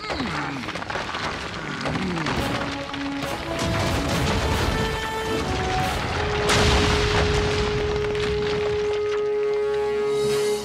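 Cartoon rockslide: a boulder crashing and rocks tumbling down a cliff, with rumbling and many crashing impacts, loudest about six and a half seconds in. Orchestral music plays underneath and holds one long note through the second half.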